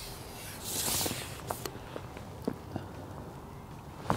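Faint handling noises: a soft rustle about a second in, then a few light clicks and taps spaced unevenly.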